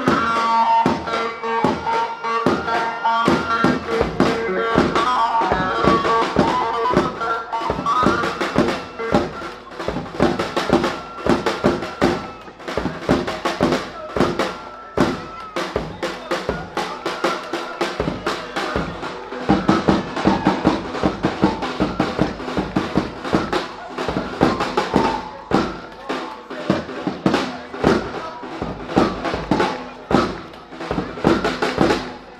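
Fast dance tune played live on an electronic keyboard through loudspeakers, with a heavy, steady drum beat that comes in about four seconds in.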